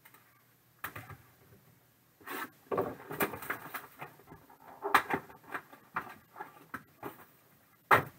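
Hands tearing the plastic wrap off a sealed trading-card box and opening it: crinkling and rustling of cellophane, with several sharp clicks and knocks of the cardboard and hard plastic card holders.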